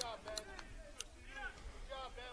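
Faint, distant voices of ballplayers calling out and chattering, with a few light clicks.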